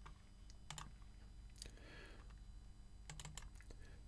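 Faint, scattered clicks of a computer keyboard during code editing, a few isolated keystrokes spread across a few seconds.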